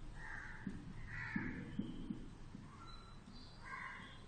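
Crows cawing several times, short harsh calls near the start, about a second in and again near the end, with a few soft knocks in between.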